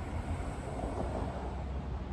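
Wind on the microphone outdoors: a steady low rumble with no clear events.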